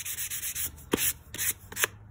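Hand sanding a small wooden block with sandpaper, several short, quick strokes across its edges. The wood's sharp edges are being rounded off and smoothed.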